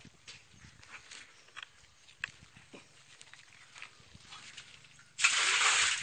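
Faint scattered knocks and scrapes, then, about five seconds in, a loud burst of splashing as rubber boots move through shallow muddy water in the bottom of a concrete tank.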